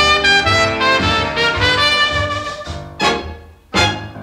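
Swing big band playing an instrumental break, with the brass section of trumpet and trombone holding chords over a pulsing bass line. Two sharp accents come near the end, and the band drops briefly in level between them.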